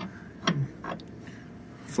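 A few light clicks and taps as a metal brake-booster pushrod depth gauge is seated flat against the booster face.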